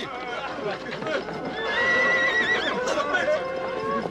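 A horse whinnying: a long, high call held for about a second in the middle, wavering at its end.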